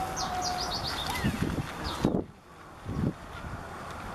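Birds chirping: a quick run of short, high, falling notes in the first second, then a few faint calls. Several dull low thumps come around the middle.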